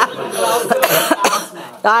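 Laughter in short breathy bursts, then a voice starts speaking near the end.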